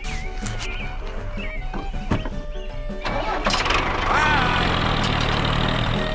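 Background music with a steady beat. About halfway through, a louder noisy rush joins it, with a brief rising-then-falling whine, and runs to the end.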